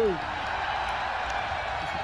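A man's voice briefly at the start, then a steady background murmur of distant voices and open-air noise.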